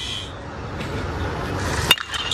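A two-piece hybrid BBCOR baseball bat's alloy barrel striking a pitched baseball once, a sharp ping near the end, over a steady background rumble.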